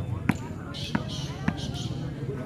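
A ball bounced three times on a hard dirt court, sharp knocks about half a second apart, over a background of crowd voices, with a higher hiss through the middle.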